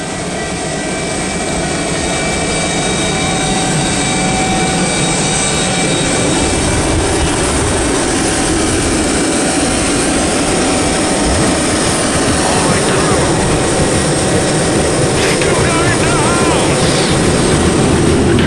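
Boeing 737 jet engines heard from inside the cabin, a steady engine noise with a high whine that grows gradually louder as the airliner powers up for its take-off roll.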